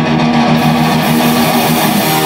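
Hardcore punk band playing live, just into the song: loud distorted electric guitar playing fast, repeated chords, recorded through a phone's microphone.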